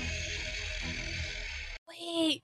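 Music from the anime's soundtrack, a steady sustained sound with a deep low rumble under it, cut off suddenly just before the end.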